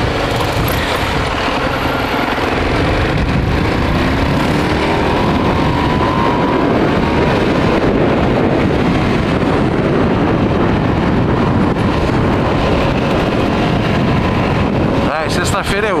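Kasinski Comet GTR 650 V-twin motorcycle on its stock exhaust accelerating through the gears, the engine note rising in pitch over the first several seconds, then heavy wind noise on the microphone as it reaches about 96 km/h.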